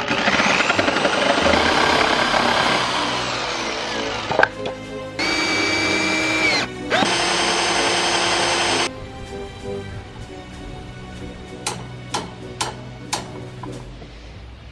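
A Ryobi reciprocating saw cuts through a wooden beam for about four seconds, its motor whine rising and then falling. A cordless drill then bores into a block of wood in two runs of about a second and a half each. Background music plays underneath.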